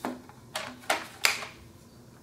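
Bottom cover of an MSI GS73VR laptop being pried off its chassis: four sharp clicks in the first second and a half as the cover's edge snaps free.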